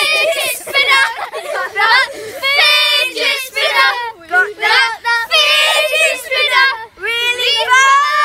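A group of boys singing loudly together without accompaniment, in a ragged chant with several long held notes.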